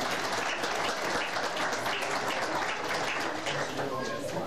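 Audience applauding, many hands clapping steadily, with some voices mixed in.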